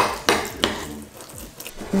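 A metal spoon stirring a thick, wet cereal mixture in a ceramic bowl, clinking and scraping against the bowl, with a sharp clink at the very start and smaller clinks after it.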